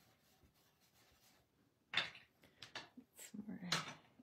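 Near silence, then from about halfway through a few light clicks and knocks of a small blender brush being set down and a plastic stamp pad case being picked up and handled on a craft mat.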